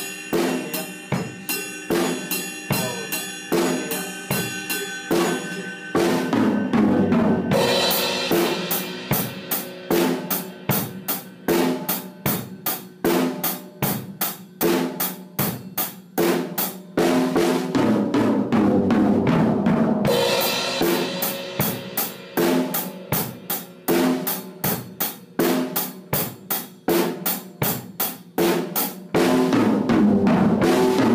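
Drum kit playing a steady basic beat on hi-hat, snare and bass drum, broken by fills around the snare and toms. Crash cymbal hits come in about six seconds in and again about twenty seconds in, the second right after a run of tom strokes.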